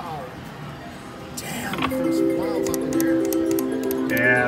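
Video slot machine's electronic music: a quieter first part, then about two seconds in a tune of held notes stepping up and down starts, with light clinking clicks over it as a new spin begins.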